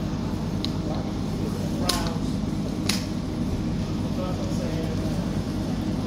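A steady low mechanical hum, with faint voices in the background and two sharp clicks about a second apart near the middle.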